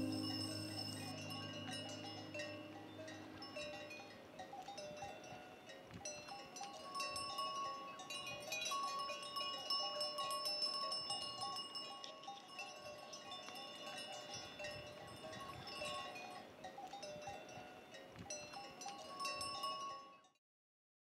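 Small bells ringing and clinking in an irregular stream. Music fades out under them in the first few seconds, and the sound stops abruptly at the end.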